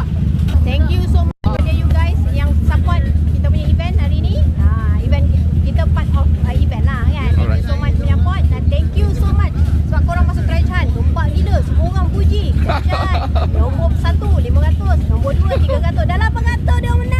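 A woman talking, with other voices around her and a steady low rumble underneath. The sound drops out completely for an instant about a second and a half in.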